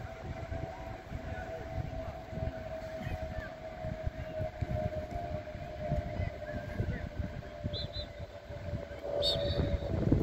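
A steady mid-pitched hum, dipping slightly in pitch near the end, over low, uneven rumbling from wind on the microphone. Two short high chirps come about eight seconds in, and a brief high whistle-like sound just after nine seconds.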